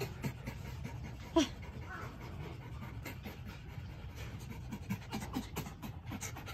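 Two pet foxes play-wrestling, with quick panting breaths and scuffling throughout and one brief squeak about a second and a half in.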